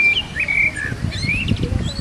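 Birds chirping: several short whistled calls that slide up and down in pitch, over a gusty low rumble of wind.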